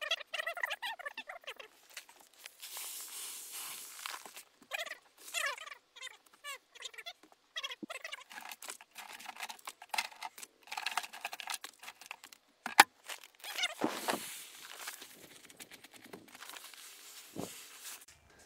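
Loose dry rice being poured and worked by hand into a plastic bucket around a paper bag of rice, in repeated hissing, rustling spells with scattered clicks. A sharp click about 13 s in is the loudest moment, and a few warbling high-pitched sounds come near the start.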